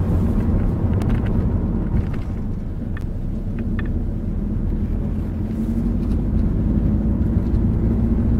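Steady engine and road rumble inside a moving car's cabin, with a low engine hum, and a few faint clicks about three seconds in.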